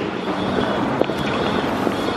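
Steady city street noise: passing traffic and wind buffeting the microphone, with a faint low engine hum under it.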